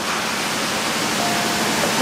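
A steady rushing noise with no distinct events, and a faint brief tone about a second in.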